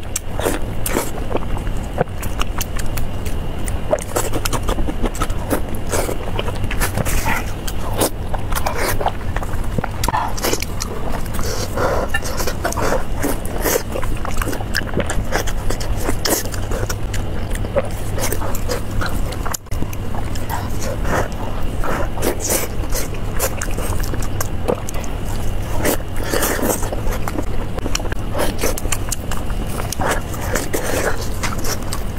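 Close-miked eating of fatty pork belly: wet chewing, biting and lip-smacking in a dense run of short clicks and smacks over a steady low hum.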